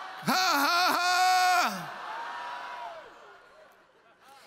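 A man's loud, high-pitched laughing whoop lasting about a second and a half, broken into a few drawn-out syllables, then a quieter held voice that fades away.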